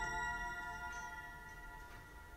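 A bell-like chime note of several pitches together, ringing and slowly fading away.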